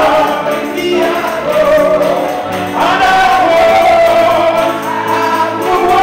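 Gospel song sung by a choir and congregation over instrumental backing, led by a man singing into a microphone, with long held notes.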